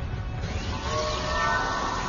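Sci-fi anime soundtrack: a low rumble, joined about half a second in by a rushing whoosh with falling tones, over held music notes.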